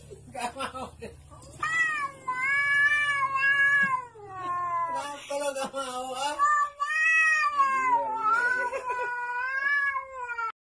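A cat giving a run of about four long, drawn-out wailing meows, each a second or two long, that rise and fall in pitch.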